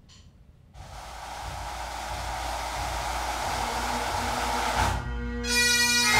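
A steady rushing noise builds for about four seconds, then after a short break bagpipes start playing about five and a half seconds in, a steady drone under the tune.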